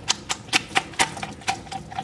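Quick, irregular light clicks and taps, about five or six a second, from crushed pineapple being drained of its juice in a yellow plastic strainer.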